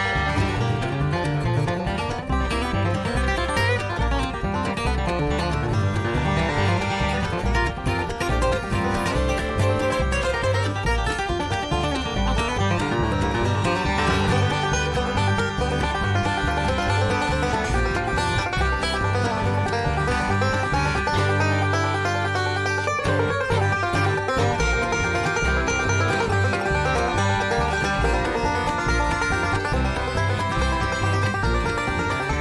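A bluegrass band recording plays a fast, banjo-led instrumental with picked strings over a walking bass line. It runs steadily at full level, with a low bass note held for a couple of seconds past the middle.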